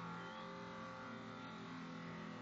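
Faint, steady hum of an engine or motor in the background, holding several even tones without change.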